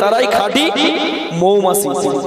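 A man's voice, the preacher's, chanting in a melodic, sung style with the pitch sliding up and down, including a quick rising glide past the middle.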